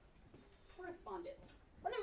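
A quiet moment, then a woman's voice beginning to speak about a second in, getting louder just before the end.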